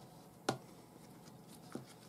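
Quiet handling noise of hands working paracord as a knot button is tightened, with a sharp click about half a second in and a fainter one near the end.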